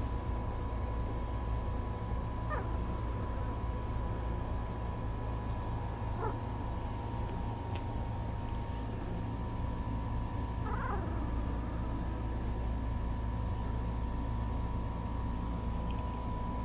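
One-week-old F3 miniature Bordoodle puppies giving three short, high squeaks a few seconds apart, over a steady low hum.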